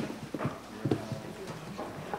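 A man's footsteps on a hard floor: a few uneven steps as he walks across a meeting hall.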